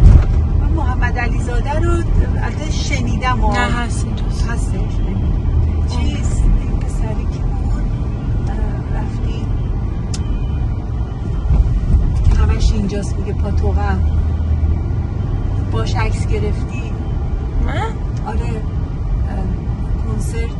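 Inside a moving car's cabin: a steady low rumble of engine and road noise, with bits of indistinct talk at times.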